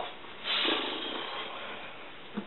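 A person's long breathy exhale, like a sigh, rising about half a second in and trailing off over about a second.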